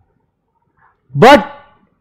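A man's voice saying one short word, "but", about a second in, after a pause of near silence.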